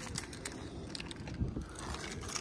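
Faint low outdoor rumble with scattered light clicks and scuffs from a hand-held camera being carried and footsteps on concrete.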